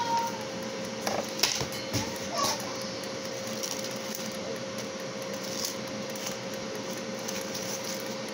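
A steady appliance hum with a faint constant whine, broken by a few light knocks and rustles in the first few seconds as garlic bread is handled on a paper plate.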